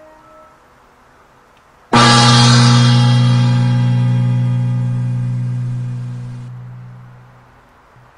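A gong struck once about two seconds in, ringing on with a deep, many-toned hum that slowly fades out over about five seconds.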